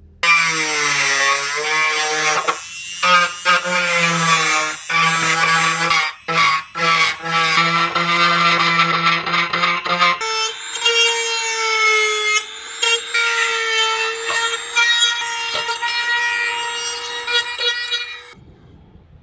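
A small rotary tool's motor running with a steady whine while it grinds glue residue off the plastic cabinet, breaking off briefly a few times and jumping to a higher pitch about ten seconds in.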